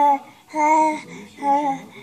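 A voice singing a string of short sing-song notes on a nearly steady pitch, three of them evenly spaced, each a little under half a second.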